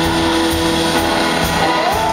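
A live blues band playing a slow blues: electric guitar holding sustained notes and bending one up in pitch near the end, over drums, bass and keyboards, with the drums landing about twice a second.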